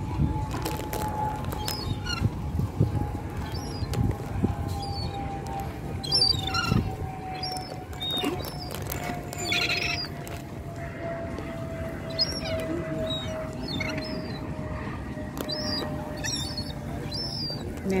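Scattered short, high bird chirps and one louder call a little before halfway, over a low outdoor rumble. A faint steady tone slides slowly down in pitch the whole time, and a few soft knocks come in the first seconds.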